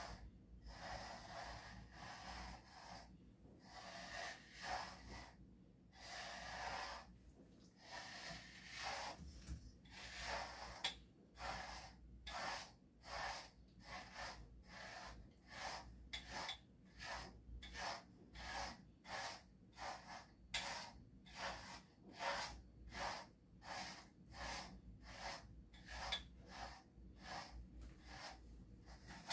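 A handheld grooming brush stroked through a dog's fur coat, making repeated soft brushing strokes that come faster and more evenly from about ten seconds in.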